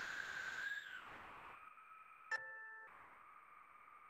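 Handbell choir playing soft chords that ring on and slowly fade; a new chord is struck about two seconds in and dies away.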